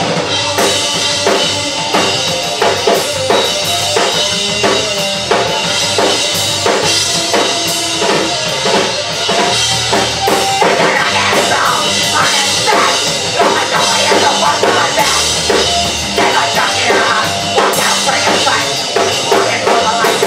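Live punk band playing loud amplified music: drum kit with a busy beat of bass drum and snare, under electric bass guitar.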